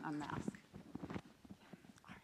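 A brief muffled voice, then a run of light knocks and taps.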